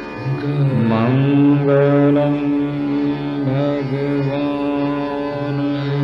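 Hindustani classical khayal in raga Marwa at slow vilambit tempo: a male voice holds long notes and slides up between them, with a wavering ornament about a second in. A tanpura drone and harmonium sound beneath the voice.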